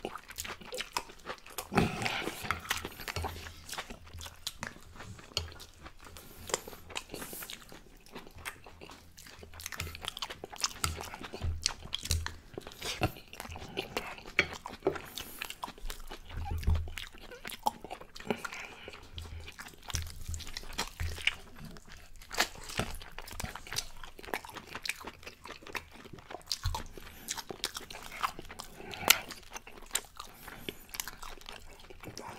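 Close-miked open-mouth chewing and lip smacking of baked chicken and couscous, a dense, irregular run of wet mouth clicks and smacks.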